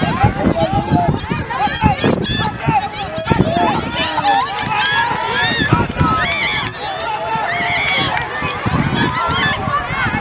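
Many high-pitched voices shouting and calling at once across a youth soccer field, spectators and players urging on play, with no clear words.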